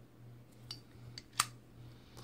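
A few light metallic clicks of a nickel boron AR-15 bolt carrier group being handled, the bolt sliding and seating in its carrier; the sharpest click comes a little over a second in.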